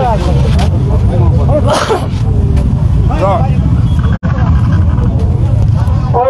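Voices of people talking close by in a crowd over a heavy, continuous low rumble. The sound drops out for an instant about four seconds in.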